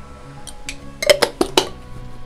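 Utensils clinking against a stainless-steel mixing bowl: two light taps, then a quick run of about five sharp, ringing clinks, as a spoon knocks chilli powder into the bowl.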